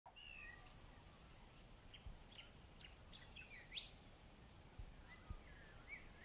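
Faint birdsong: many short whistled chirps and calls, rising and falling in pitch, scattered throughout.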